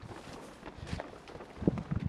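A few soft footsteps on grass and soil, irregular and a little louder near the end.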